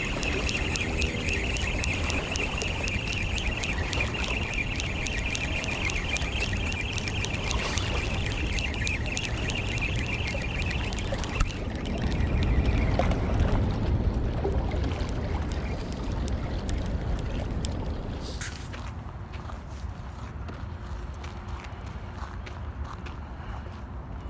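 Spinning fishing reel being cranked to bring in the line, a fast, even ticking whir, over wind rumbling on the microphone; the reeling stops about eleven seconds in. Later the sound drops to a quieter outdoor background.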